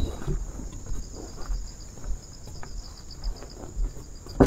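Insects trilling steadily in a high pitch, with a faster pulsing chirp beneath it, over soft irregular footfalls on a wooden boardwalk.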